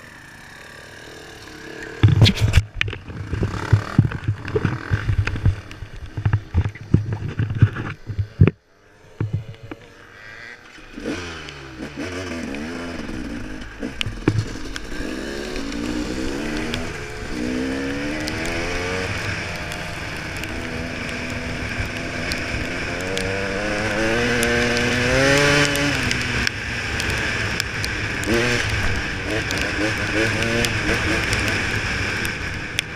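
Enduro motorcycle on a gravel track: for the first several seconds irregular thumps over a low engine note, then from about ten seconds in the engine pulls away, its pitch climbing again and again as the bike accelerates and shifts up, growing louder toward the end.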